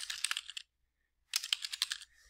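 Typing on a computer keyboard: a quick run of keystrokes in the first half-second, a pause, then a second run starting about a second and a quarter in.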